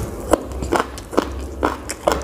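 A person chewing a mouthful of tandoori chicken, close to a clip-on microphone, with about four wet mouth smacks roughly half a second apart.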